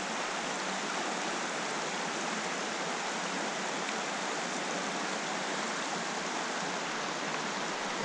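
A small, rocky mountain stream running steadily over shallow riffles: an even rush of flowing water.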